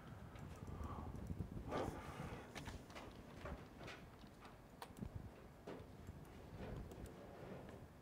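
Faint, irregular clicks and taps of a computer mouse over low room noise.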